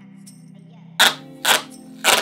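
Masking tape being pulled off its roll in short, loud rips about half a second apart, starting about a second in, over steady background music.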